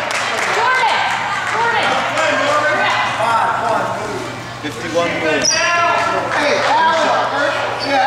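Basketball gym ambience: indistinct voices of players, coaches and spectators echo in a large school gymnasium, with a few sharp knocks from the court.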